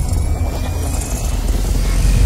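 Deep, steady rumbling drone of a cinematic intro sound effect, with a faint thin high tone slowly rising above it.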